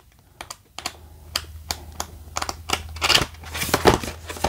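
Pages of a paperback booklet being flipped through quickly: a rapid run of light paper ticks, thickening into a rustle of paper near the end.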